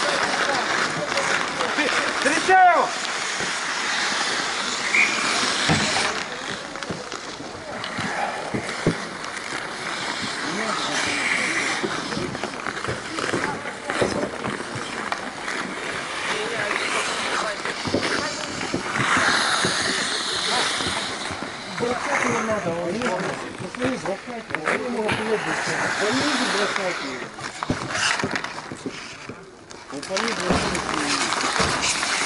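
Outdoor rink hockey play: skate blades scraping on the ice, with occasional sharp clacks of sticks and puck, and players shouting indistinctly across the rink.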